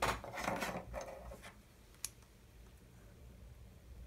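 Fingers rubbing and pressing a soaked thin wooden strip along a wooden bending jig, a scratchy scrape in several surges for about a second and a half. A single sharp click follows about two seconds in.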